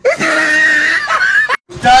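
A person's drawn-out scream, about a second and a half long, that cuts off abruptly.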